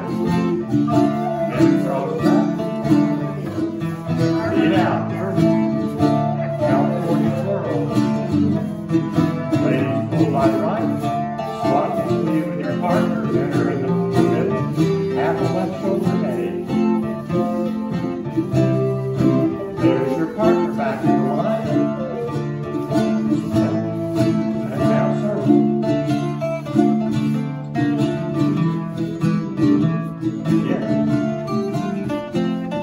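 Live acoustic folk trio of bouzouki, acoustic guitar and recorder playing an English country dance tune, with plucked strings under a sustained recorder melody.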